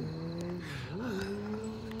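A man's drawn-out hesitant hum, held steady, then dipping and rising in pitch about a second in.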